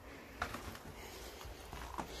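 Footsteps climbing a rusty metal staircase: one sharper step about half a second in, then softer scuffing steps.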